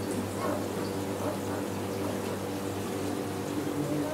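Steady hum of aquarium pumps with bubbling water from the tanks' aeration.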